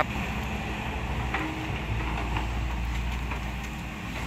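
Diesel engines of hydraulic excavators, a Kobelco and a SANY among them, running steadily as they dig in mud: an even, low drone.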